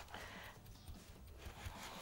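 Faint, soft rubbing and handling sounds as shredded kunafa dough is pressed down into a baking pan.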